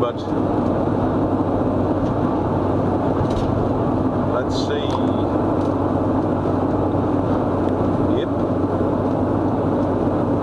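Steady rush of wind and road noise inside a moving car's cabin with the windows closed, over a constant low engine drone.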